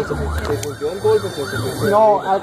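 Emergency vehicle siren on a fast yelp, its pitch rising and falling about three to four times a second, with voices behind it.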